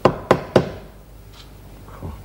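Three sharp hammer knocks on a wall, about a third of a second apart, with a fainter tap a moment later.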